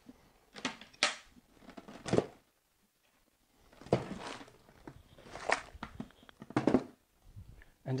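Metal toggle latches clicking and birch-plywood boxes knocking against each other as stacked storage boxes are unlatched and lifted apart. It is a string of separate sharp clicks and knocks, with a short quiet pause about two and a half seconds in.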